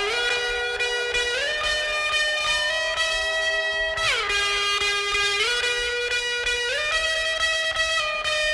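Drum and bass tune in its bridge, played over a loud rave sound system: a distorted lead line holds long notes that step up and down, with a slide down in pitch about halfway through and little heavy bass under it.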